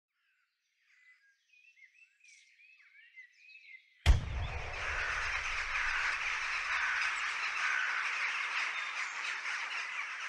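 Faint bird chirps for the first few seconds. About four seconds in, a sudden low thump brings in a dense, steady outdoor hiss, and birds keep chirping through it.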